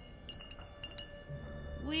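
Background score of steady held tones, with several light glass clinks in the first second, like small glass vials knocking together. A man's voice starts near the end.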